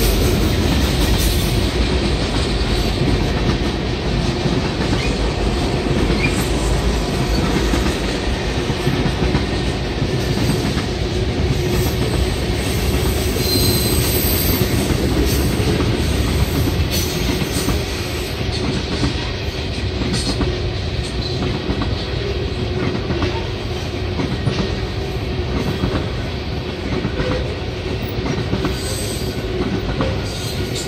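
Freight train tank cars rolling past close by: a steady rumble of wheels on rail with repeated clicking over the joints, and a brief high wheel squeal about halfway through.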